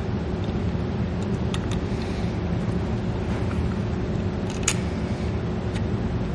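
Steady low background rumble with a faint steady hum, and a few light clicks as a small bulb and a plastic-and-chrome cab-light housing are handled, the clearest about four and a half seconds in.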